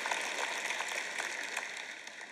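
Scattered applause and rustling from a large audience, dying down.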